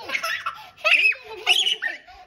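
A young child laughing, with high-pitched squealing giggles in short bursts, loudest about a second in and again half a second later.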